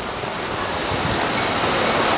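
Steady rushing of flowing water from the stream and waterfall below the bridge, a continuous noise that grows slightly louder.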